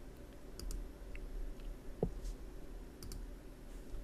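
A handful of faint, scattered clicks from a computer keyboard and mouse, a couple at a time, over a low steady hum.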